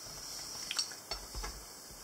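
Faint clicks and light knocks of crockery and food being handled on a plate, with a soft low bump about halfway through.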